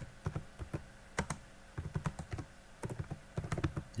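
Computer keyboard typing: a run of irregular, quick key clicks as a short phrase is typed.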